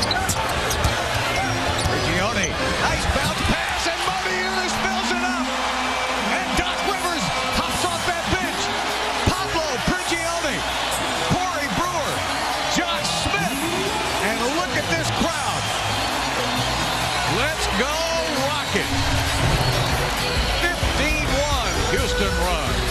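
Live basketball court sound: a ball bouncing on a hardwood floor and sneakers squeaking in many short chirps, over a steady din of arena noise. A low music bed comes in near the end.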